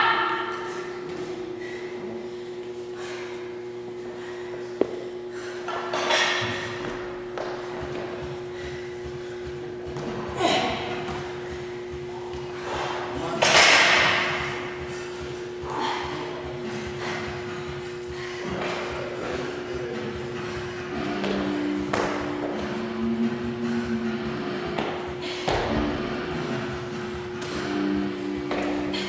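Workout sounds in a gym: an athlete doing wall handstand push-ups, with thuds and several hard, noisy breaths a few seconds apart, the loudest about halfway through, over a steady low hum.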